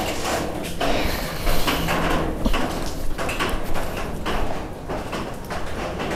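Irregular rustling and scuffing from a clip-on microphone rubbing against a hoodie as the wearer walks.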